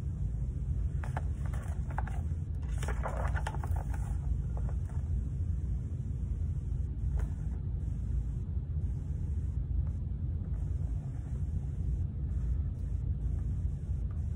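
Steady low rumble of room background noise, with a few faint rustles from handling the paperback picture book about three seconds in.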